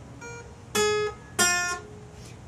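Acoustic guitar fingerpicked one note at a time: two single notes ring out and fade, the first higher, fretted at the ninth fret of the B string, then the open B string.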